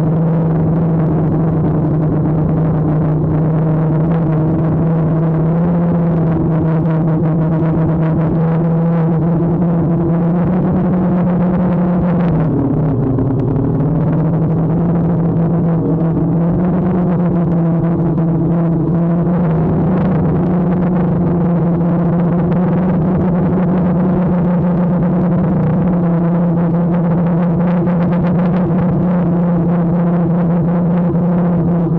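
DJI Phantom quadcopter's motors and propellers whining steadily, picked up by the camera mounted on the drone itself. The pitch sags for about a second around the middle as the motors slow, then comes back up.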